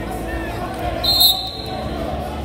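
A referee's whistle blast, short and shrill, about a second in, starting the wrestling bout, over voices and chatter in a large gym.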